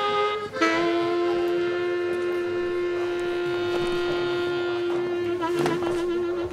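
Saxophone finishing one note, then about half a second in holding a single long, steady low note, the closing sustained note of a slow band arrangement.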